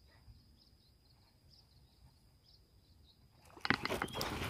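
Quiet open-air ambience: a faint steady high-pitched whine with a few faint short chirps. Near the end a sudden loud burst of sharp clicks and noise breaks in.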